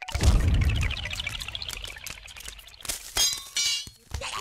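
A heavy thud about a quarter-second in, followed by a rush of splashing, pouring-like noise that fades, then a bright metallic ring a little after three seconds in.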